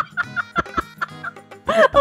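A woman's rapid cackling laugh: a quick run of short, high-pitched bursts.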